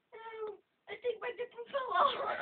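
A person's high, whining cry, one short call falling in pitch, followed by choppy bursts of laughter.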